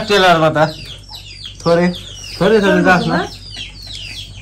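Chickens clucking, three drawn-out, wavering calls: one at the start, a short one about a second and a half in, and a longer one around three seconds.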